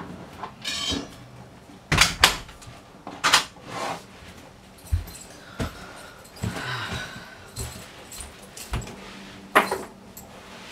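Irregular knocks, clicks and rustles of a person moving about a room and handling things, the loudest clicks about two seconds in and again near the end.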